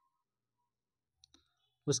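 Near silence broken by two faint clicks in quick succession a little past the middle, then a man's voice starts speaking near the end.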